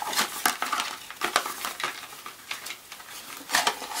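A small white cardboard box and the breast pump's 9-volt AC adapter being handled: a run of irregular light clicks, taps and scrapes, busiest in the first second and again near the end.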